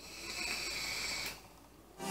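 Someone drawing hard on a vape: a steady airy hiss of air pulled through the tank's airflow, lasting a little over a second and then stopping.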